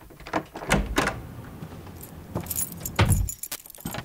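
A bunch of keys jangling among small clicks and knocks, with heavier thumps about three-quarters of a second and three seconds in.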